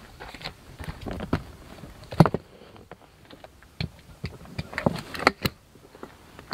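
Scattered clicks and knocks of a Glide 'n Go XR transfer-lift seat being handled and fitted onto the lift's arm, with the sharpest knock a little over two seconds in and a few more near the end.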